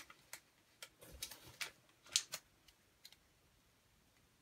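Faint, scattered taps and rustles of someone fumbling with a paper receipt, about half a dozen short handling noises with the loudest about two seconds in.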